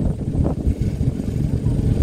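Open dune buggy driving over desert sand: its engine and the wind buffeting past the open cage make a continuous, uneven low rumble.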